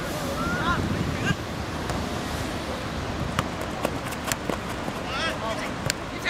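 Wind rumbling on the camera microphone, with a few brief distant shouts and several sharp knocks.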